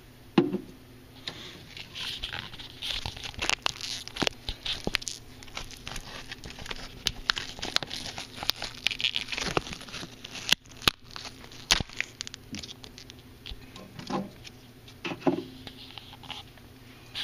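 Rustling, scraping handling noise as a handheld camera rubs against skin and clothing, with many irregular clicks and a knock about half a second in and another near the end.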